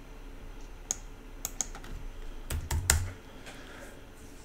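Computer keyboard keystrokes and clicks: scattered single taps, then a quick cluster with a dull low thump about three seconds in.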